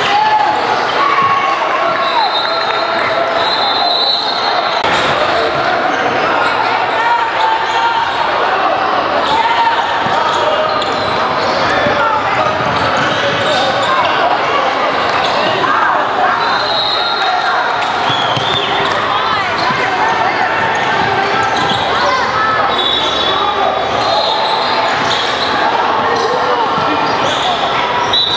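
Sound of a basketball game in a large gym: overlapping voices of players and spectators calling out, the ball bouncing on the hardwood, and several short high sneaker squeaks on the court.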